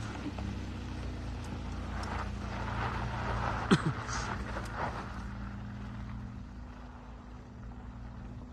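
Tank 300 off-road SUV's engine running steadily as it drives away over a dirt track, growing fainter toward the end. A single sharp knock sounds about three and a half seconds in.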